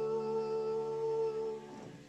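The closing chord of a choral blessing, held steady and then dying away near the end.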